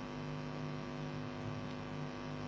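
Faint, steady electrical mains hum in the recording: a low, even buzz that does not change.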